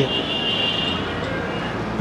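Steady background city traffic noise, with a faint thin high tone during the first second or so.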